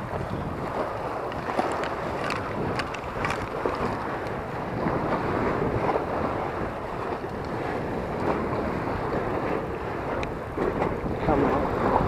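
Wind buffeting the microphone over water washing against a seawall, a steady rough rush, with scattered light clicks and rustles of clothing and handling.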